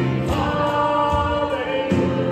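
Worship band and singers performing a hymn, several voices singing together over held instrumental chords.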